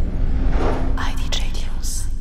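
Record-label audio logo sting: a deep rumble under a steady low hum, joined from about a second in by a whispered voice and hissing swishes.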